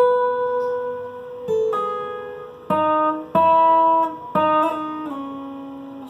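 Steel-string acoustic guitar playing a slow single-note melody: several notes, each left to ring, some sounded by hammer-ons on the second string.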